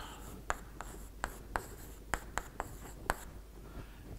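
Chalk writing on a blackboard: an irregular run of short, sharp taps and brief scrapes as the chalk strikes and strokes across the board.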